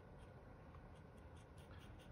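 Faint scratching and light ticks of a Birchwood Super Black touch-up paint pen's tip dabbing paint onto a pistol slide's metal.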